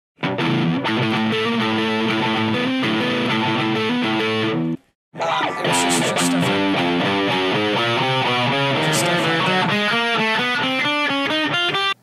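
Distorted electric guitar playing a riff, then, after a brief cut to silence just before five seconds, a faster run of stepping single notes. The host calls the playing limp and unclean, not real guitar playing.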